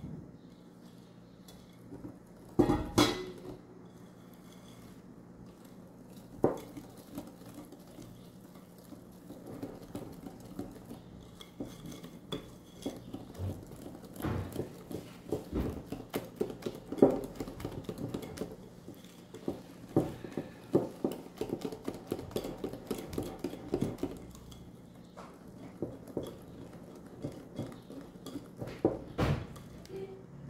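Metal wire whisk beating thick chocolate cake batter by hand in a glass bowl, clicking and tapping against the glass in quick, uneven strokes as the flour is worked in. There are a few louder knocks, the loudest about three seconds in.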